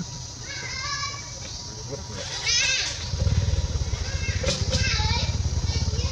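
Macaques calling: several short high-pitched calls that bend in pitch, the loudest about two and a half seconds in. A low rumble underneath grows louder about three seconds in.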